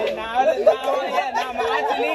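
Several people laughing and chattering over one another.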